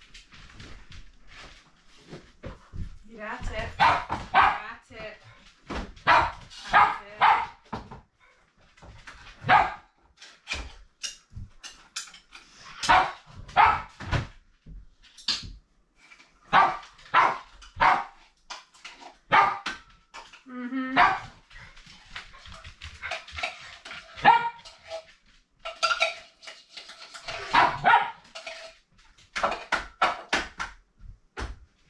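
Dogs barking repeatedly in short volleys, with a brief wavering whine about two-thirds of the way through.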